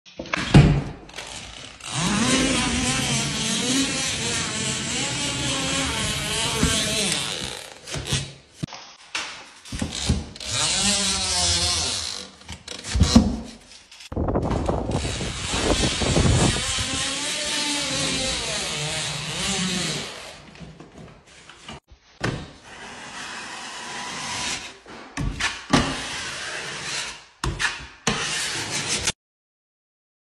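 Drywall taping tools working on walls and ceiling joints: an automatic taper running paper tape along a joint and a blade cutting across tape. The result is rubbing and scraping with a wavering whir, in several separate stretches broken by abrupt cuts.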